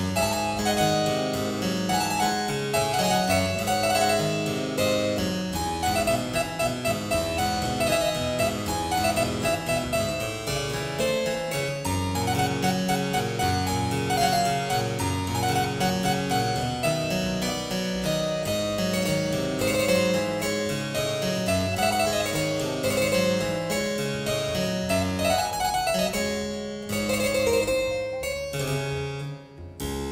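Solo harpsichord playing a fandango, a steady stream of quick plucked notes that thins out and fades near the end.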